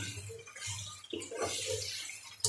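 Raw chicken pieces sizzling in hot oil and juices in a nonstick wok while a wooden spatula stirs and turns them, with a couple of louder stirs.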